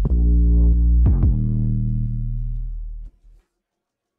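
808 bass separated from a full song by iZotope RX 11's stem separation, playing solo: two hits about a second apart, the second ringing out and fading until it stops about three seconds in. Heard as sounding better, with less of the muffled, underwater quality of the other tool's separation.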